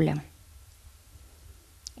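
Quiet room tone with a steady low hum, and one short click near the end.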